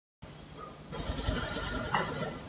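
The audio drops out to dead silence for a moment, then low hiss and room noise from a lapel microphone return, growing louder about a second in.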